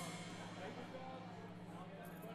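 Low steady electrical hum from the band's stage amplifiers idling between songs, with one sharp click at the very start.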